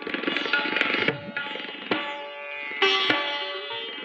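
Sitar playing raga Bhairavi in Hindustani classical style. A quick run of plucked strokes in the first second gives way to held, ringing notes, with a bright, louder stroke about three seconds in.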